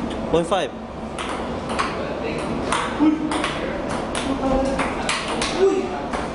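Table tennis rally: the ping-pong ball clicking sharply off paddles and the table, about a dozen hits at an irregular pace of a few a second.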